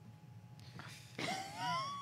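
Quiet room tone, then about a second in a faint, high, drawn-out vocal sound from one person, rising and then held, like a wordless moan or whine.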